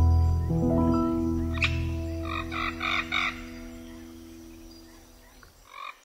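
Final held notes of a slow, relaxing piano piece over a low sustained drone, fading steadily out. About two and a half seconds in comes a short run of four frog croaks, and one more near the end.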